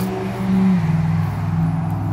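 Ford 6.7-litre Power Stroke V8 turbodiesel idling with a steady low hum. Its pitch drops slightly a little under a second in.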